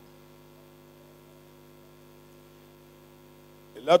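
Steady electrical hum, a constant low buzz of several steady tones, carried through the microphone and sound system in a pause in speech. A man's voice starts again right at the end.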